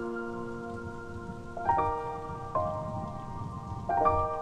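Slow solo piano waltz, sustained chords ringing and fading, with new chords struck a little under two seconds in, again a second later, and near the end. Underneath is a steady sound of falling rain.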